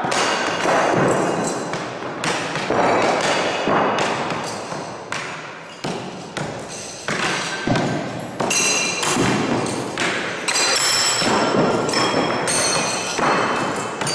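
Throwing knives striking wooden target boards in quick succession: a rapid, irregular series of thuds, about one or two a second, some ending in a short metallic ring, echoing in a large hall.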